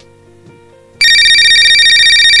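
The faint tail of a music track, then, about a second in, a loud electronic telephone ring starts: a steady, high, rapidly pulsing tone.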